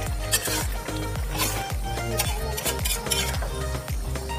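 Background music with a steady beat, over a metal spatula scraping and clinking against an aluminium wok as a wet mushroom curry is stirred.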